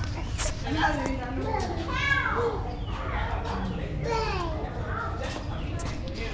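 Children's voices calling and chattering over a steady background murmur of people.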